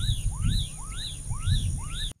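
A bird calling over and over, a little more than two calls a second, each call a quick upward-sweeping note topped by a higher arched note. Under it run a steady high hiss and a low rumble.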